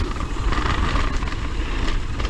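Propain Tyee mountain bike rolling fast down a dirt trail: knobby tyres running on loose dirt and the bike rattling, under a heavy rumble of wind buffeting the camera microphone.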